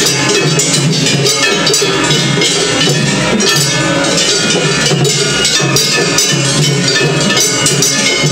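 Gion-bayashi festival percussion, with taiko drums and clanging brass kane gongs struck in a fast, steady, unbroken rhythm. The bands of two facing floats play against each other at once in a tataki-ai, so the drumming and clanging overlap densely.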